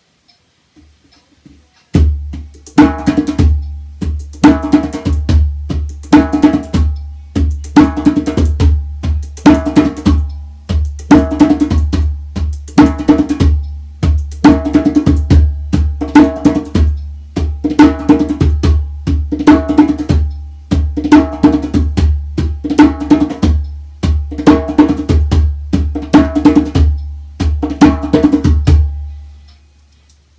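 Djembe played by hand in a steady repeating rhythm, sharp slaps alternating with deeper tones, over a continuous deep bass. It starts about two seconds in and stops just before the end.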